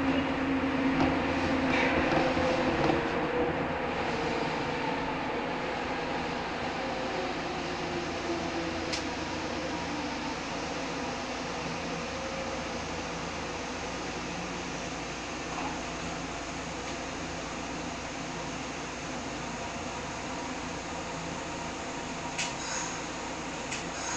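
Interior running noise of a Nagoya Municipal Subway Tsurumai Line 3000-series train: a steady rumble with a faint motor hum whose pitch drops in the first few seconds. It grows gradually quieter as the train slows.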